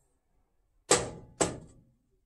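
A full drinking glass of juice knocked down onto a kitchen countertop: two sharp knocks about half a second apart.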